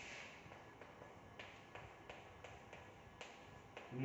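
Chalk writing on a blackboard: a string of faint, sharp taps and short scratches as letters are written.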